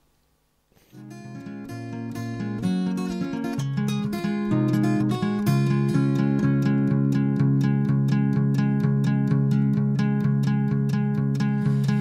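Acoustic guitar playing a steady picked and strummed folk accompaniment. It comes in about a second in and swells to an even level. This is the unprocessed source track of a compressor demo.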